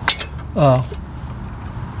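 A few quick metallic clinks right at the start, metal against metal as a hand works at the chaincase filler plug of a riding mower.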